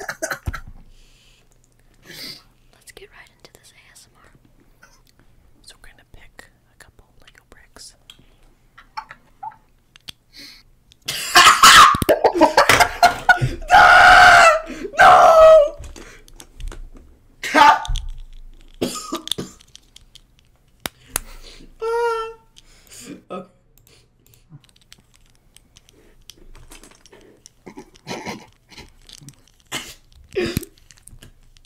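Plastic LEGO bricks handled close to a microphone: soft, scattered clicks and rattles. About eleven seconds in, several seconds of loud, close noise break in.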